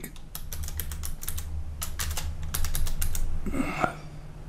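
Typing on a computer keyboard as a single word is entered: a quick run of key clicks lasting about three seconds.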